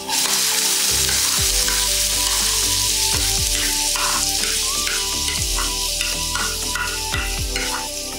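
Chopped onions dropped into hot oil with garlic and curry leaves in a kadhai: a loud sizzle that starts suddenly and holds steady, easing slightly near the end, with a spoon pushing and stirring the onions in the pan.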